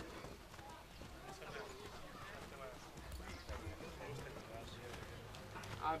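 Faint, indistinct voices of footballers and coaches on an outdoor training pitch, with the light footfalls of players jogging on turf. A coach's loud call starts at the very end.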